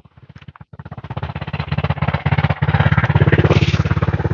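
A motor vehicle on the highway approaching and passing close by, its engine growing steadily louder from about a second in and loudest near the end.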